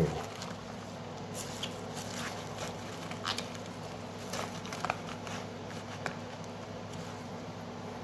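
A hand rummaging through romaine lettuce in a plastic clamshell salad container: scattered light rustles and small plastic crinkles over a steady low hum.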